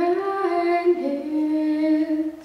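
A woman's solo voice singing long held notes, with a second, lower held note joining about a second in.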